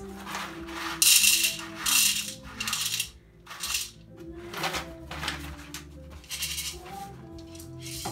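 Coffee beans poured from a paper bag into a glass bowl on a kitchen scale, rattling in several short pours in the first few seconds and once more near the middle. A record of soft music plays in the background throughout.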